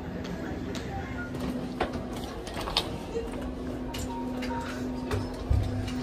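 Airport terminal ambience: a steady low hum, scattered clicks and knocks, and faint background voices.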